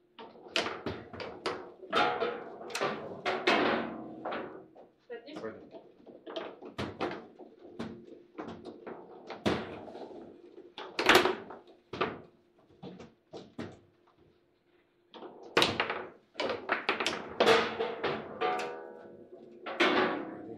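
Table football in play: rapid, irregular clacks and knocks of the hard ball being struck by the plastic players and hitting the table walls, with rods banging in between. There is a brief lull a little past the middle.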